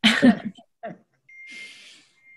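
A short burst of laughter over a call's audio, then a small sound and a soft breathy hiss. A thin, steady high tone starts over the hiss in the second half.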